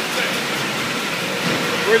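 Steady din of a high-speed beer bottling line running: conveyors carrying glass bottles and rotary filling and labelling machinery, an even continuous noise with no distinct knocks.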